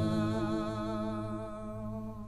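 Music ending on one long held vocal note with vibrato, slowly fading.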